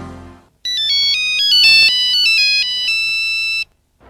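Electronic mobile-phone ring melody of steady beeping tones stepping up and down in pitch, two or three notes sounding at once. It starts about half a second in as a music jingle fades out, and cuts off suddenly shortly before the end.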